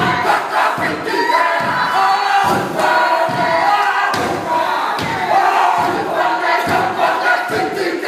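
A group of men performing a Māori haka: loud shouted chanting in unison, with a thud on each beat from stamping and slapping, a little under one a second.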